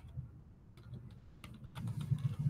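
A few separate keystrokes on a computer keyboard, faint and sparse, as code is typed and edited.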